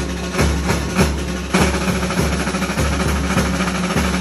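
Drum and cymbals of a Calabrian giants' dance band playing a steady, fast beat, a few strokes a second. The sound grows louder and brighter about a second and a half in.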